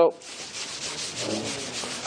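Steady scratchy rubbing against a lecture board, dipping briefly just after it starts.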